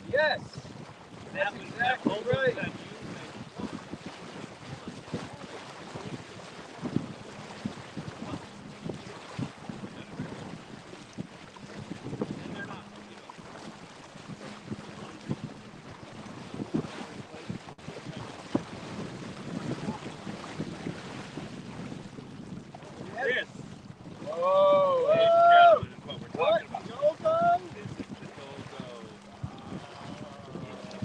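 Wind buffeting the microphone over the rush and slap of water along the hull of a 22-foot Chrysler sailboat under sail. Short bursts of voices come in just after the start, and a loud voice rises for a couple of seconds about three quarters of the way through.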